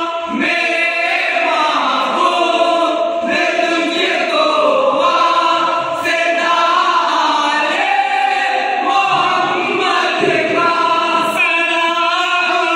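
A group of men singing an Islamic devotional song (naat) together, unaccompanied, in long held notes that waver and bend.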